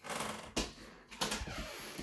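A quick series of clattering clicks and scraping rubs in a small room.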